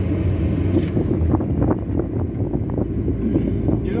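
Car driving along a road, heard from inside the cabin: a steady low rumble of engine and tyres on the road.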